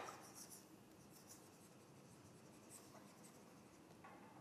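Faint scratching and light taps of a stylus writing on a tablet screen, coming in short patches against near silence.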